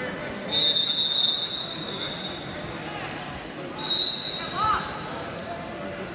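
A referee's whistle blown twice: one long blast of about a second and a half, then a short blast about two seconds later. Crowd chatter runs underneath.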